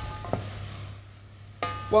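A wooden spoon stirring minced beef as it fries in a stainless steel saucepan: a faint sizzle with one light knock of the spoon shortly after the start.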